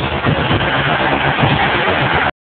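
A police jeep's engine running steadily as the jeep drives along a dirt lane.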